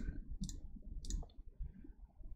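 Faint computer mouse clicks, three in about a second and a half.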